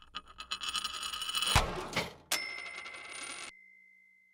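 Animated logo sound effect: a quick run of clicks and rustles building to a sharp hit about a second and a half in, then a bright ding that rings on and cuts off near the end.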